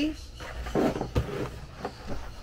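Scissors cutting through a sheet of card stock: several short snips in the second half.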